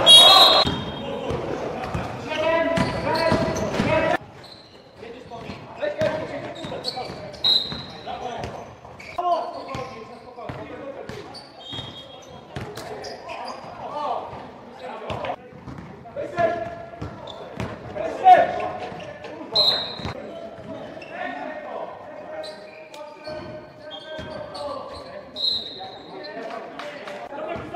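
Live game sound in an echoing gym: a basketball bouncing on the court floor, players' shouts and voices, and a few short high squeaks. The level drops about four seconds in.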